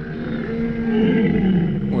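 A dromedary camel calling: one drawn-out, low call lasting about a second and a half.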